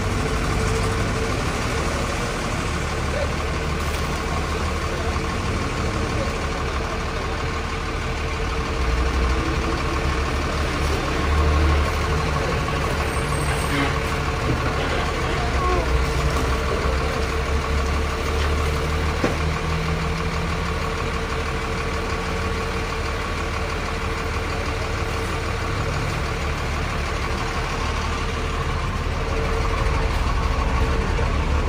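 Dump truck engine idling steadily close by: a continuous low rumble with a faint steady hum over it.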